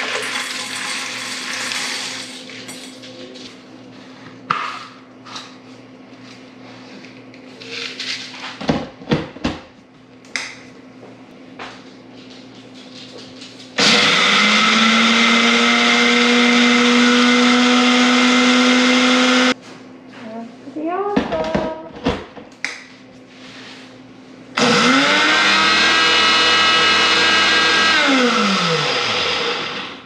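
Electric grinder grinding dried pepper slices into powder, its motor running twice: a steady run of about six seconds about halfway through, then a shorter run that winds down with a falling pitch near the end. Clicks and knocks of the container being handled come before and between the runs.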